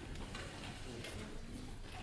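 Stage changeover noise: footsteps and shuffling on a wooden stage, with scattered light knocks and clicks of chairs and music stands being moved.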